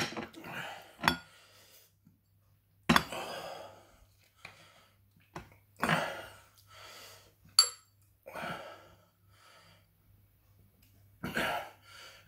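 A man breathing hard in short bursts, with gasps and coughs, from the burn of a Carolina Reaper chip on his tongue. A sharp clink of glass comes about seven and a half seconds in.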